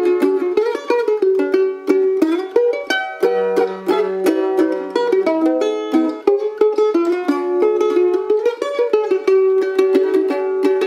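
A 1949 Gibson F12 mandolin, freshly revoiced, played with a flatpick: a fast run of picked single notes, with a lower note ringing underneath from about three seconds in.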